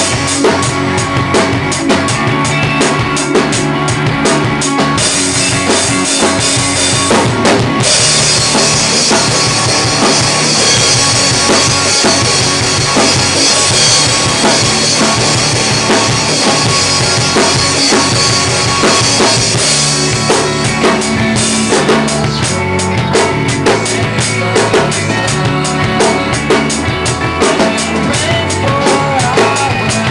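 Acoustic drum kit played along to a recorded rock song: bass drum, snare and cymbals over the track's sustained guitars. A long stretch of continuous cymbal wash runs from about 8 to 20 seconds in, then gives way to sharper, evenly spaced strokes.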